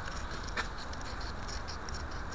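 Handling noise of a small handheld camera: rustling and scattered light clicks over a steady low rumble, with one sharper click about half a second in.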